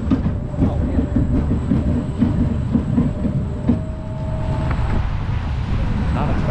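Spinning roller coaster car running along its track: a steady low rumble with rapid rattling clatter from the wheels and car, then a faint whine for about a second after the middle.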